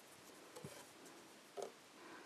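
Very faint sounds of embroidery thread being drawn through evenweave fabric with a needle, two soft brief rasps, one about half a second in and one near the end.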